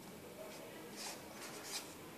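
Felt-tip marker writing on paper: a few short scratchy strokes as characters are drawn, the loudest near the end.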